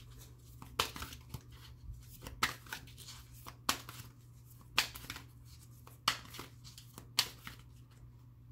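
A deck of tarot cards being shuffled by hand, with about six sharp snaps a little over a second apart.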